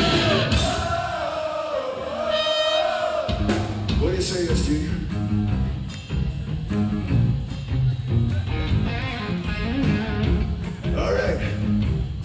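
Live rock band (electric guitars, bass, drums and lead vocals) playing loud. For about the first three seconds there is a held, sustained passage without bass or drums; then the full band comes back in on a steady drum beat, with singing at times.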